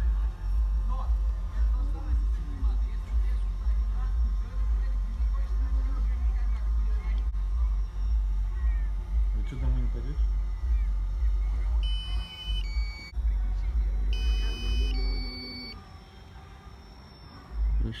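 DJI drone app on a tablet controller sounding its low-battery warning: two short electronic beeps about two seconds apart near the end. Under them, a steady low rumble.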